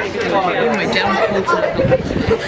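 A small group of people chatting at once, their voices overlapping into indistinct chatter.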